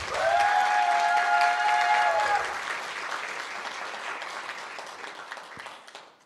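Audience applauding, with one long held whoop over the clapping for about the first two seconds; the applause fades out near the end.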